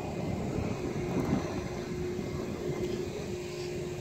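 Steady low rumble of outdoor background noise with a faint steady hum underneath; no distinct knock or slam stands out.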